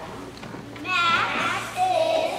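Young children's voices speaking together, starting about a second in after a quiet stretch of hall murmur.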